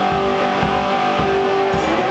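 Homemade wine box guitar played slide-blues style: held notes that bend slightly in pitch, over a low thump keeping the beat about twice a second.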